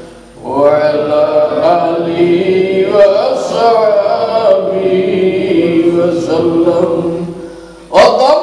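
A man's voice chanting one long, slow devotional phrase of drawn-out, wavering notes. It starts about half a second in and tails off just before the end.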